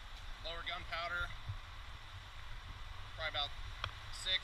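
A man speaking a few short words twice, over a steady low rumble and faint hiss.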